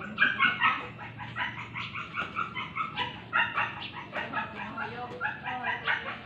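An animal calling in a rapid string of short, repeated calls, several a second.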